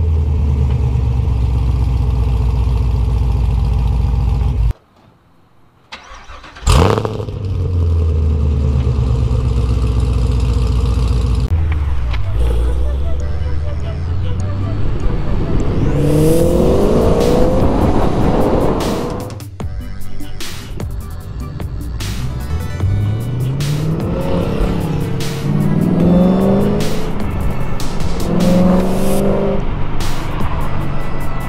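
Chevrolet Camaro SS 6.2-litre LT1 V8 running without catalytic converters, through off-road connection pipes. It first runs steadily at the tailpipes. Later it accelerates hard through several gears, the pitch climbing in each gear and dropping at every shift.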